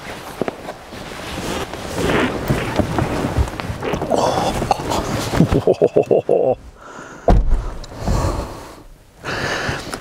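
Rustling, shuffling and small clicks as a person climbs into the driver's seat of a Jaguar F-Type convertible and settles in, with a quick run of ticks and then a deep thud about seven seconds in.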